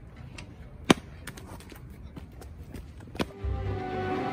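Two sharp knocks on a metal park gate being kicked, one about a second in and a second just after three seconds, over faint outdoor background. Music starts right after the second knock.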